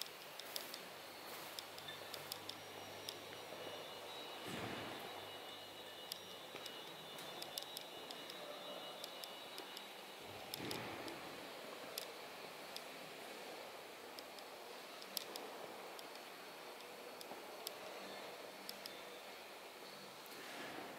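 Faint ambience of a large, hard-surfaced hall, with scattered small clicks and two brief swells of rushing noise about four and ten seconds in.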